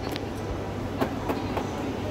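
Steady low background din of a shopping mall, with a few light clicks and taps over it.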